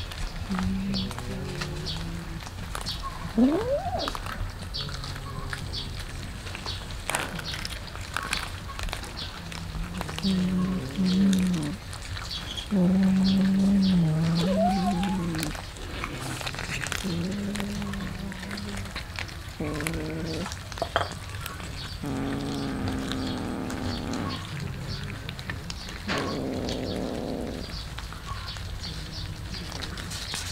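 Cats feeding on raw fish from a metal tray, giving low drawn-out growls every few seconds as they guard the food, with a rising meow about three and a half seconds in. Small clicks of eating run underneath.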